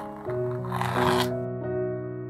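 Masking tape being peeled off a painted canvas: a scratchy tearing lasting about a second, over soft piano music.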